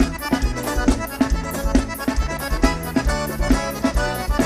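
Forró band playing an instrumental break between sung verses, the accordion carrying the melody over a steady bass and drum beat.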